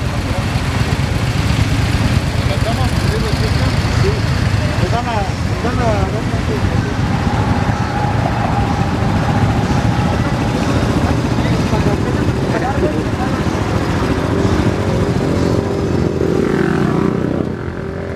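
Many motorcycle engines running together in a large stopped group, at a steady loud level, with people talking among them.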